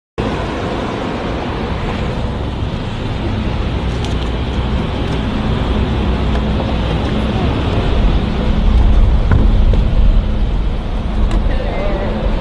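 A car driving by: a steady low rumble of engine and road noise that grows a little louder toward the end, with faint voices near the end.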